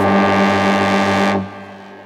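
Electronic dance music in a DJ mix: a loud, low synthesized drone with a slight pulse, like a foghorn, that cuts off about one and a half seconds in, leaving a quieter sustained tail.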